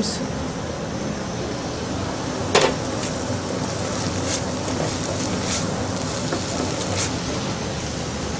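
Wooden spoon stirring risotto rice with chopped dried porcini in a copper saucepan on a gas burner, making a few short scrapes against the pan, the loudest about two and a half seconds in, over a steady hiss.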